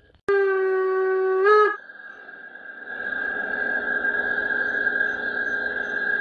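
G-scale model steam locomotive's sound unit blowing a single steam whistle of about a second and a half that lifts in pitch just before it cuts off. After it the model's running sound carries on: a steady high whine over a soft hiss.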